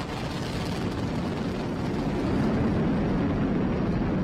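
Falcon 9 first stage's nine Merlin 1D engines firing during ascent: a deep, steady rumble that grows slightly louder about halfway through.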